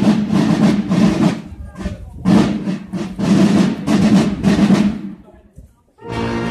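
Marching drum corps playing field and snare drums in a rapid rhythm with stronger accents about once a second, dying away near the end.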